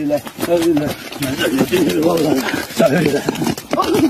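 Loud, excited human shouting, with short knocks and scuffs throughout.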